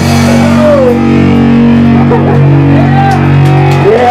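Live hardcore metal band playing loud, distorted guitar, holding low chords that change about halfway through and break off near the end.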